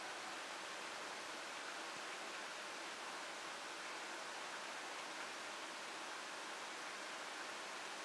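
Faint steady hiss of room tone and microphone noise, unchanging throughout, with no distinct sounds standing out.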